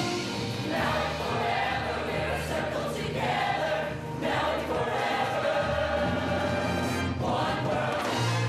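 Large mixed show choir singing full-voiced phrases in parts, with live band accompaniment holding a steady bass line underneath.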